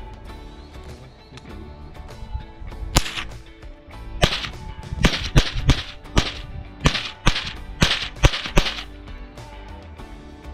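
A .22 lever-action rifle fired in quick succession: about ten sharp cracks between three and nine seconds in, some only half a second apart.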